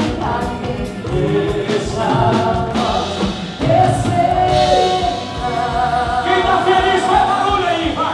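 Live band music with several voices singing together over a steady beat.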